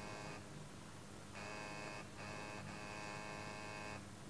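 Steady electrical buzz with many overtones over a low mains-type hum. The buzz breaks off for about a second shortly after the start and briefly twice more in the middle, while the low hum carries on.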